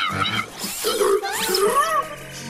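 Cartoon robot's electronic voice: a run of warbling, pitched chirps and beeps with quick rising glides.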